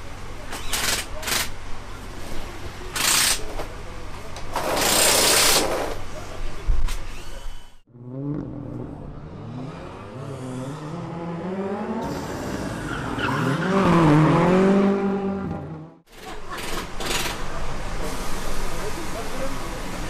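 Rally car engine on the track revving up and down through a corner, its pitch climbing and dropping with each gear change and loudest near the end of its run. Before it comes paddock work noise: sharp clicks and knocks and a hiss lasting about a second and a half.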